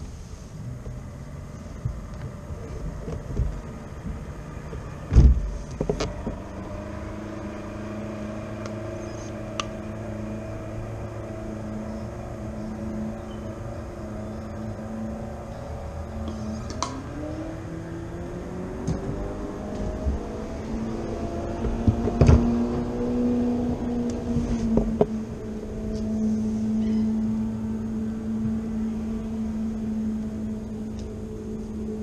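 A kayak's electric motor whines steadily as it drives the boat. Its pitch steps up twice, around the middle and again about two-thirds through, and a few sharp knocks are heard, the loudest about five seconds in.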